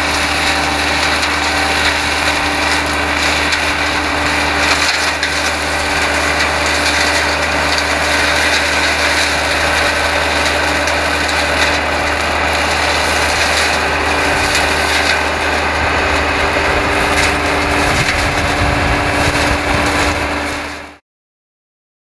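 Massey Ferguson 6485 tractor running steadily under load, driving a side-arm flail hedge cutter whose head is chewing through hedge growth. It cuts off suddenly near the end.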